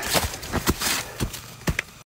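Footsteps on dry leaf litter, about six steps in quick succession, with rustling of clothing between them.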